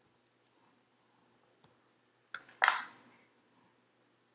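Computer keyboard keys being typed: a few faint clicks, then a louder brief cluster of keystrokes just past halfway.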